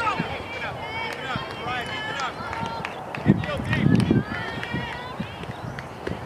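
High-pitched young voices of players and spectators calling out and cheering at a softball game, overlapping throughout, with one sharp knock about three seconds in.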